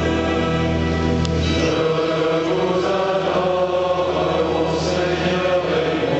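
Choral music: voices singing held, chant-like lines over a low sustained note that drops away about two seconds in.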